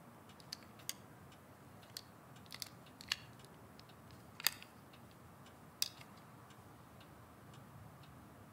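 Quiet room tone broken by about seven small, sharp clicks and taps at uneven intervals, the sharpest about halfway through; nothing after about six seconds in.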